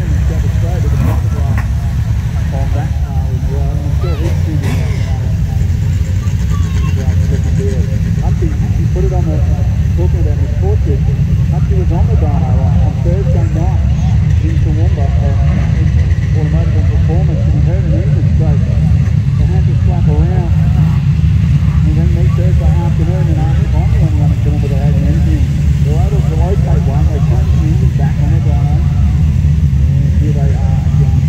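Steady low rumble of production sedan race cars running slowly in a parade, with indistinct voices talking over it throughout.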